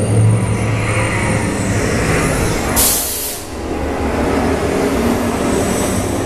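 Test Track ride vehicle rolling along its track with a steady low rumble and hum. A short burst of hissing noise comes about three seconds in.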